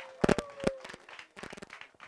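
A few sharp knocks: two close together about a quarter second in, another shortly after, then fainter ones past the middle, over a faint steady tone that fades out about halfway.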